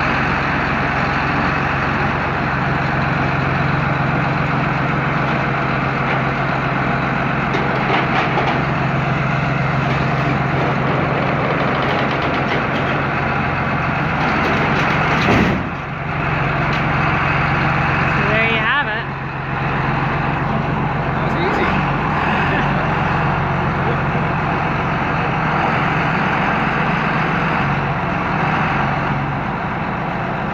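John Deere loader tractor's diesel engine running steadily under load as it pulls the flipped barn door down by a rope, with one sharp loud bang about fifteen seconds in as the door drops off the roof.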